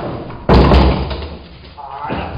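A single loud thump about half a second in, fading over about half a second, during a young dog's lunging tug on a bite rag held by its handler, with scuffling around it and a short voiced sound near the end.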